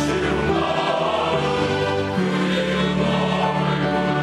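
Male choir singing in harmony, holding long notes, with a change of chord about two seconds in.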